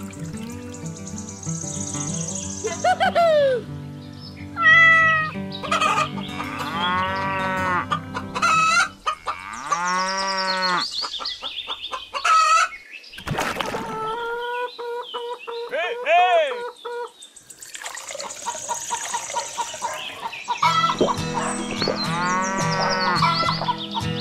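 Farm animal calls laid over background music, with a low drawn-out call near the middle of the stretch.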